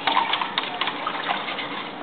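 A spoon stirring salt into water in a plastic mug: water swishing, with repeated light clicks of the spoon against the mug's sides and bottom.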